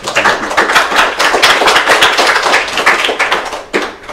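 Audience applauding: many hands clapping densely, dying away near the end.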